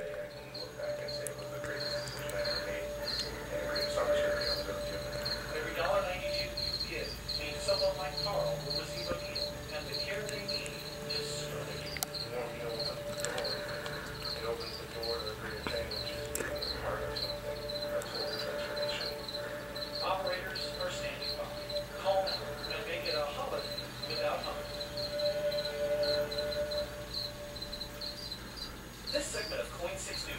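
Cricket chirping steadily: an even, rapid series of short high chirps that goes on without a break.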